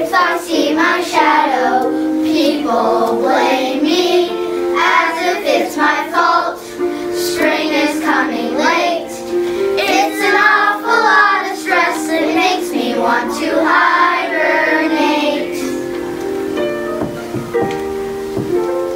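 A group of children singing a song over a steady musical accompaniment. The singing thins out near the end, leaving mostly the accompaniment.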